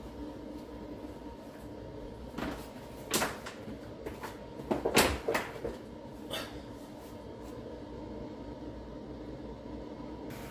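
A few short knocks and clicks, clustered in the middle, the loudest about five seconds in, over a steady low hum.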